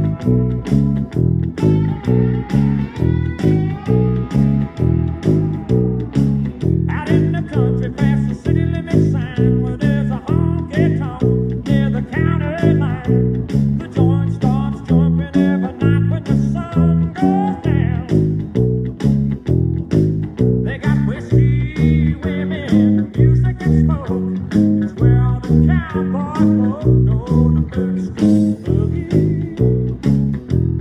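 Fender Jazz Bass electric bass played fingerstyle, driving a steady boogie line with evenly repeated low notes. It plays along with a country band recording's instrumental intro, where electric guitar riffs come and go above it, without vocals.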